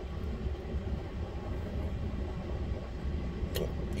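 Steady low rumble of a car's idling engine heard from inside the cabin, with a short click about three and a half seconds in.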